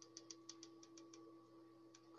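Faint quick clicking of a hot glue gun's trigger feed as glue is squeezed out, about seven small clicks a second that stop after about a second, over a faint steady hum.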